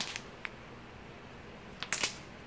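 A few light clicks and crinkles from a plastic sleeve of makeup brushes being handled: a couple at the start, one about half a second in, and two near the end, over quiet room tone.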